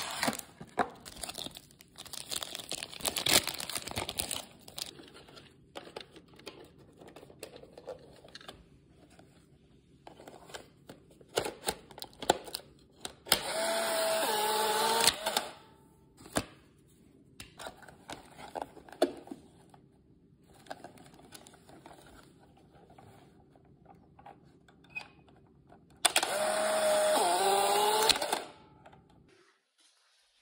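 Foil wrapper of a Polaroid 600 film pack crinkling and small plastic clicks as the cartridge is handled and loaded into a Polaroid Sun600. The camera's ejection motor then whirs for about two seconds, pushing out the dark slide, and whirs again for about two seconds near the end.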